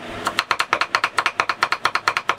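Two cleavers, a bone cleaver and a vegetable cleaver, chopping garlic in quick alternation on a chopping board, about seven even knocks a second, starting a moment in. The garlic is being minced fine for a garlic sauce.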